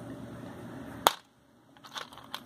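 A single sharp click about a second in, after low background noise, followed by near silence with a few faint small clicks near the end.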